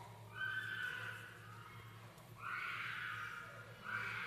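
A young child's high-pitched crying: two drawn-out, wavering wails, the first just after the start and the second from a little past halfway, over a low steady hum.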